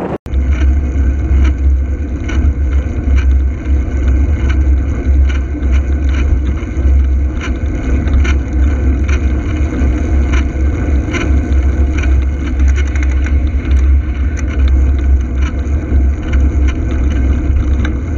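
Wind rumbling and buffeting on the camera microphone while cycling along a road, with road noise and frequent light clicks and knocks from the ride.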